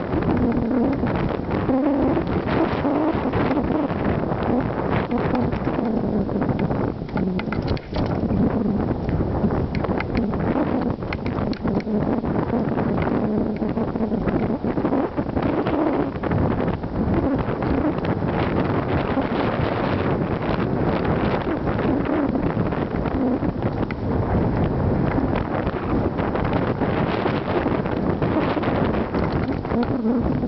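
Mountain bike riding over a rough dirt and rock singletrack, with wind buffeting the microphone and a constant run of rattles and knocks from the bike over the bumps.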